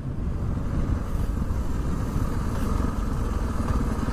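Honda XR650R's single-cylinder four-stroke engine running at a steady road speed, with wind rushing over the helmet camera.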